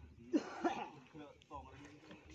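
Someone coughing twice in quick succession, followed by brief talk.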